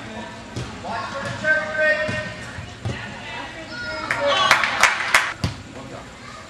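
Indoor futsal play in a gym hall: voices shouting indistinctly, then a quick run of sharp knocks and squeaks from the ball and players' shoes about four and a half to five and a half seconds in, the last one a heavier thump.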